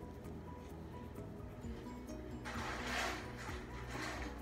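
Soft background music with sustained held notes. About two and a half seconds in comes a rustle about a second long, as the paper-wrapped plants are handled and swapped.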